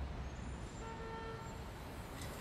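City street traffic with a steady low rumble, and a short car horn honk about a second in.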